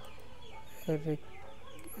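A single short voiced sound, a hum or half-spoken syllable, about a second in, over a low steady background hiss.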